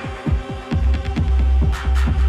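Bass-heavy electronic dance music from a DJ set: a deep kick drum with a falling pitch pounding about four times a second, giving way about three quarters of a second in to a long held sub-bass note.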